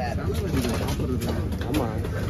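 Busy background of several people talking over a low steady rumble, with a bird cooing.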